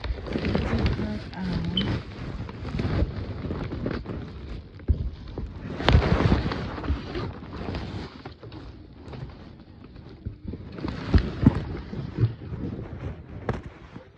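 Rustling and scraping of doll clothing and packaging handled right against a phone microphone as a doll is worked out of its box, uneven in loudness with louder bursts about six seconds in and again near eleven seconds, and a few sharp clicks.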